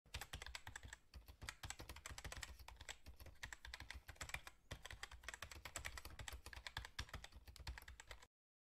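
Faint, rapid, irregular keystrokes on a computer keyboard: a typing sound effect, with brief pauses about a second in and again just before five seconds.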